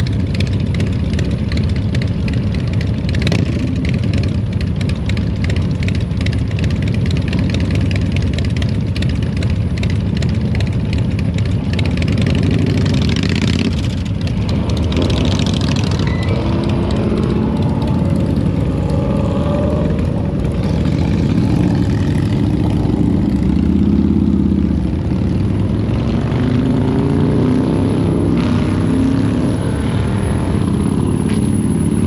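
A vehicle engine running steadily, loud and close, a continuous low rumble with a wavering pitch in the second half.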